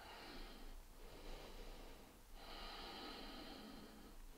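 Faint, slow breathing of a woman holding a one-legged yoga balance pose: two long breaths of about two seconds each.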